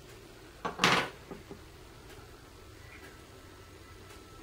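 A brief clatter of small objects being handled on a wooden table, a sharp click just before it and two light knocks after.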